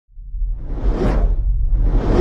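Cinematic whoosh sound effects over a deep low rumble, the sound design of an animated logo intro: one swoosh swells and fades about a second in, and another begins at the end.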